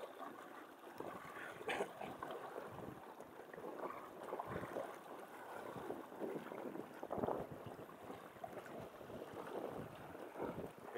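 Small waves lapping and splashing at the water's edge, with wind buffeting the microphone, rising and falling unevenly. A few brief handling sounds come from the hooked pinfish being held.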